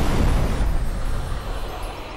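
A fantasy sound effect for a magical vanishing in a puff of smoke: a deep rumbling, hissing whoosh that fades away.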